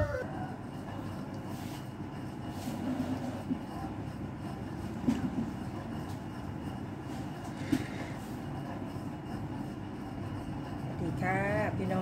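Steady low rumbling background noise with two brief faint knocks in the middle. A woman begins speaking near the end.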